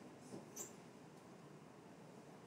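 Near silence: room tone, with one faint, brief high-pitched squeak about half a second in.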